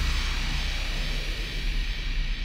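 Closing logo sound effect: a rushing noise over a deep rumble, slowly fading out.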